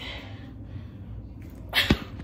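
A single short, sharp burst of breath from a person near the end, over quiet room tone.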